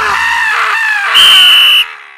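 A cartoon character's scream of pain, wavering in pitch, followed by a referee's whistle blown in one long steady blast, the loudest sound, calling the foul; the whistle stops shortly before the end.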